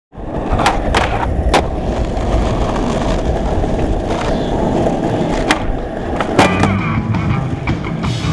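Skateboard wheels rolling over rough asphalt, a steady low rumble, with several sharp clacks from the board, three close together about a second in and two more later.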